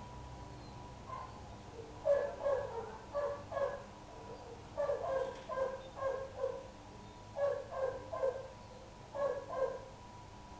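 A dog barking in short, sharp calls, in quick runs of two to four with brief pauses between runs.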